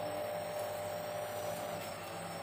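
A steady, even mechanical hum with a few constant tones, with no distinct knocks or handling sounds.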